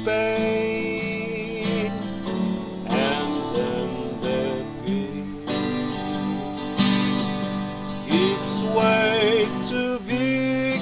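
A Christian hymn sung over instrumental accompaniment, the singer holding long wavering notes.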